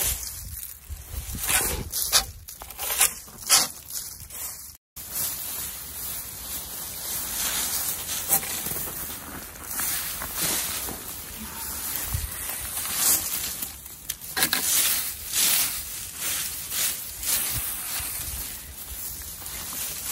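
Dry fallen leaves being raked across soil and scooped into a plastic bag: irregular scraping and crackling rustles, with the plastic bag crinkling as it is handled.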